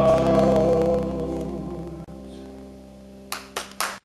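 A male singer holds a final long note over the band's sustained chord, which then slowly fades. Near the end, three short sharp noises, like the first claps from the audience.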